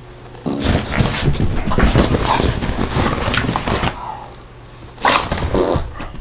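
An English bulldog making noisy vocal sounds in two bouts: a long one starting about half a second in and lasting over three seconds, then a shorter one near the end.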